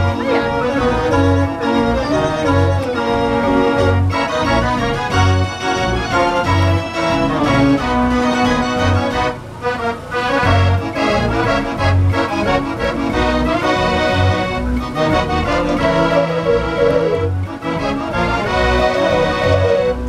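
A Decap dance organ playing a tune: accordion and organ-pipe voices over a steady low beat from its built-in drum kit.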